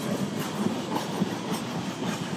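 Freight train of boxcars rolling past on the tracks: steady wheel-and-rail noise with faint clacks as the wheels cross the rail joints.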